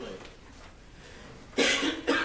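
A person coughing once, loud and short, about a second and a half in, in a quiet room.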